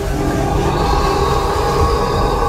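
A train running along the track: a steady low rumble with several high, drawn-out tones held over it.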